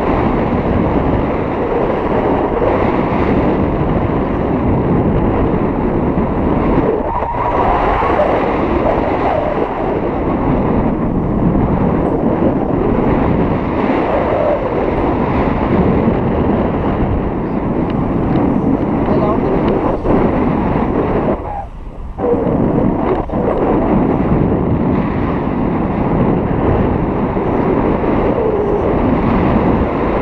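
Wind rushing hard over the microphone during a paraglider flight, a loud, unbroken roar of air that dips briefly a little over twenty seconds in.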